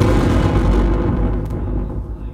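Loud distorted electronic noise from a live noise performance over the PA. It starts abruptly, holds for about a second and a half, then fades.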